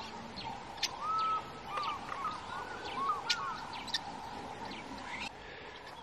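Wild birds calling in the bush at sunrise: scattered chirps and short looping whistles, busiest in the middle, over a steady faint drone. The calls and the drone stop a little after five seconds in, leaving quieter ambience.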